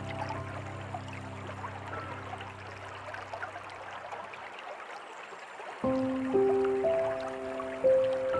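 Slow, soft piano music over a steady trickling stream. A held chord fades out about halfway through, leaving only the running water, and new piano notes come in just before six seconds.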